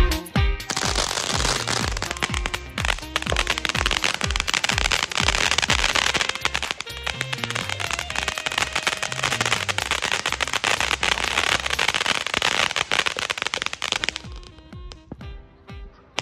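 Ground fountain firework spraying sparks with a dense, continuous crackle that stops about 14 seconds in, over background music with a bass line.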